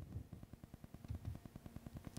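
Faint room tone with a low, fast, even pulsing buzz.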